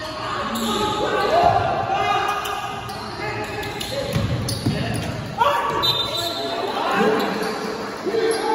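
Live basketball game in a large gym hall: the ball bouncing on the court floor while players and spectators shout, all echoing in the hall. A sharp knock comes about five seconds in.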